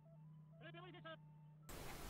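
Near silence, with a faint low hum and a faint, short, wavering pitched sound a little past halfway through.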